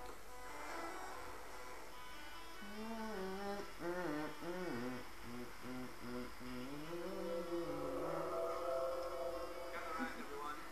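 A person humming a wordless tune: one voice sliding between wavering and held notes.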